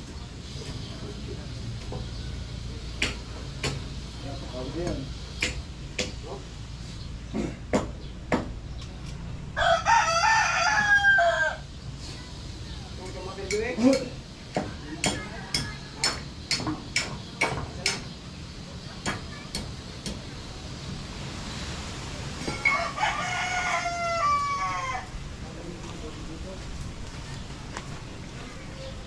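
A rooster crowing twice, each crow about two seconds long, the first about ten seconds in and the second some twelve seconds later. Scattered sharp knocks and clicks sound throughout.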